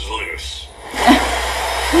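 Movie trailer soundtrack under a steady low hum, with brief voice-like sounds. About a second in there is a sudden loud hit.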